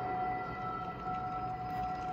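A held, steady drone of a few high pitched tones over a faint hiss, from the teaser trailer's soundtrack.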